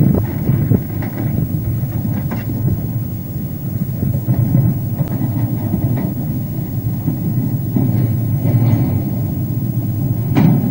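Narrow-gauge rail-recovery train moving slowly away: a steady low rumble from the wagons and the rail-ripping sled, with a few faint knocks.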